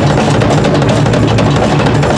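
Thrash metal band playing live and loud: electric guitars, bass and a drum kit hammering out fast, closely spaced hits in a dense, unbroken wall of sound.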